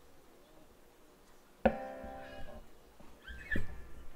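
Acoustic guitar: one chord struck about one and a half seconds in, ringing and fading, followed by a short gliding sound near the end.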